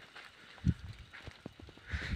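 Soft, scattered footsteps on dry, gravelly ground, with one louder low thump about two-thirds of a second in. No thunder is heard.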